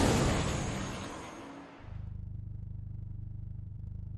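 Title-sequence sound effects: a loud whoosh-and-boom hit that dies away over the first second and a half, then a low pulsing rumble.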